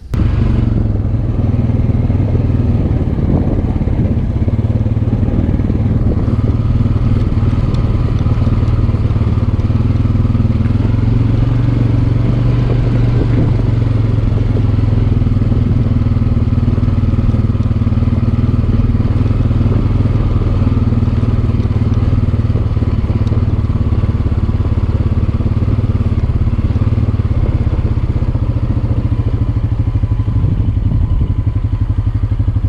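Honda TRX-420 ATV's single-cylinder four-stroke engine running at a steady speed while riding a rough dirt trail, heard close up from the handlebars. It makes a loud, even hum.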